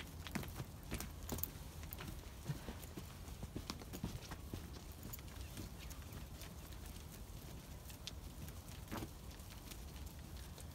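Hooves of a flock of Zwartbles sheep walking on a muddy, stony track: faint, irregular clicks and scuffs.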